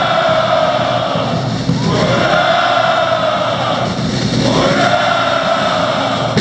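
A mass of male cadets' voices shouting a long, drawn-out "Ura!" in unison three times, each call sliding up at its start and then held for about two seconds, over steady accompanying music.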